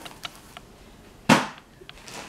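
A single sharp slap from a hardback book being put away on a wooden table, a little past halfway through, with a faint click before it.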